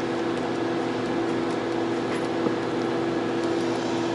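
Steady hum and whir of running vintage HP test equipment, its cooling fans giving a constant drone with several steady low tones over an even hiss.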